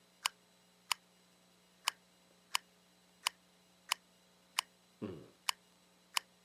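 Eight short, sharp clicks, mostly about two-thirds of a second apart with one longer gap, tapping out a clave rhythm. A brief faint hum is heard about five seconds in.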